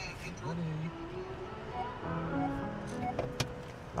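Music playing from the car stereo inside the cabin, low in level with short held notes, with faint voices under it.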